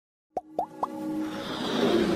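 Animated logo intro sound effects: three quick plops, each gliding up in pitch, about a quarter second apart, followed by a musical swell that grows steadily louder.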